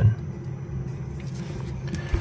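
Steady low background hum with faint hiss: room tone under the recording.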